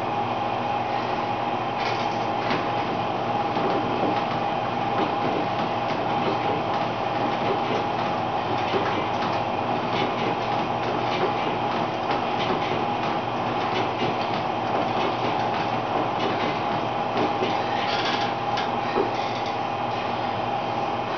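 Elliptical trainer in use, its drive and flywheel running under steady striding as a continuous mechanical whir with a steady hum.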